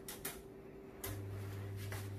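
Built-in electric wall oven's control knob clicking as it is turned. About a second in, a click and a low steady hum begin as the oven switches on to preheat.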